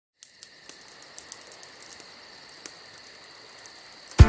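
Faint crickets chirping: a steady high trill with small ticks scattered over it.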